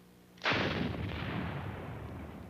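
A single revolver shot about half a second in: a sudden loud report with a long tail that slowly fades away.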